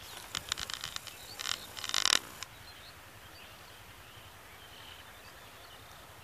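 Outdoor rural ambience with faint scattered bird chirps, broken in the first two and a half seconds by a burst of sharp clicks and crackles, loudest about two seconds in.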